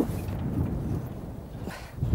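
Steady low rumble of wind and boat noise on a fishing boat's deck, with a brief knock right at the start.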